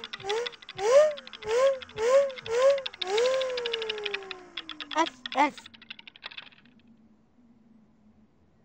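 A children's TV character's high, sing-song nonsense vocalising: about six short rising-and-falling syllables, then one long falling note and two short calls. A fast run of light, dry clicks plays under it and stops a little before the end.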